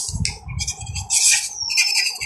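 Felt-tip marker scratching and squeaking on notebook paper in short irregular strokes, with a thin falling squeak near the end.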